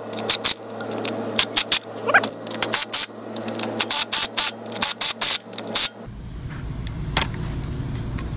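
Ridgid impact driver hammering in a series of short bursts as it runs nuts down onto concrete anchor bolts, stopping about six seconds in.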